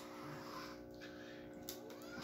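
Quiet room with a faint steady hum and two light clicks, one at the start and one near the end.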